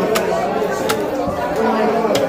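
A heavy chopping knife striking through pieces of a bhetki (barramundi) fish into a wooden log chopping block: two sharp chops about three quarters of a second apart. Underneath runs the steady chatter of many voices.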